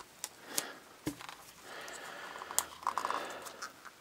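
Faint handling of a plastic Treasure X Aliens toy: scattered small clicks and rubbing of hard plastic parts, a soft knock about a second in, and a quick run of small clicks near the end.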